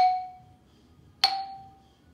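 Deagan No. 262 'Artists' Special' xylophone, its Honduran rosewood bars with brass resonators struck one at a time with a mallet. Each note is a sharp strike with a short ring. One note sounds right at the start and a slightly higher one about a second later, climbing up the scale.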